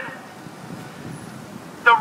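Low, steady background hum of city street traffic. A man's voice through a megaphone comes back in near the end.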